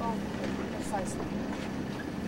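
Steady rushing noise of wind and water aboard a sailboat under way, with a low steady hum underneath and brief faint voices about a second in.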